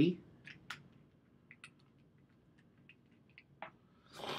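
A few faint, scattered clicks and ticks from small plastic parts being handled: an e-liquid dropper bottle and a clearomizer tank being readied for filling.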